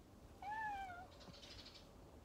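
A domestic cat meowing once: a single short call that rises slightly and then falls.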